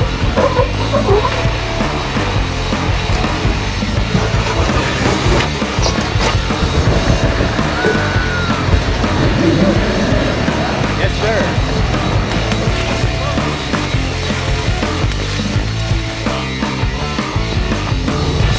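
Loud rock music with drums and guitar, with some voices mixed in.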